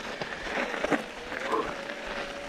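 Bike tyres rolling over loose dirt and rocks on a steep trail climb, with scattered clicks and knocks from the bikes, and a faint steady tone coming in near the end.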